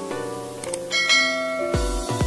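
Background music under a subscribe-button sound effect: a light click, then a bright bell-like notification chime about a second in. Near the end an electronic beat with deep, falling kick drums starts, about two strokes a second.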